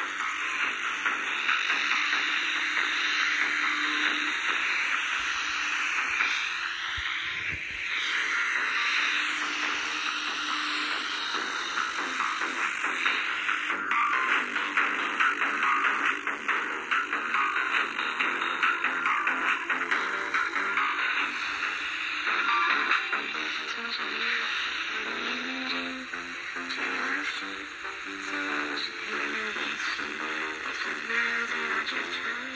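Music played through the small speaker of a Waxiba pocket AM/FM radio, received from a homemade low-power FM transmitter. It sounds thin, with little bass or treble, and has a hiss under it.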